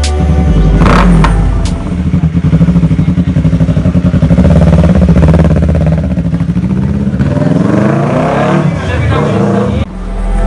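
Yamaha YZF-R3's parallel-twin engine running, with a sharp blip of the throttle about a second in, a steady pulsing idle, then revs rising in pitch near the end.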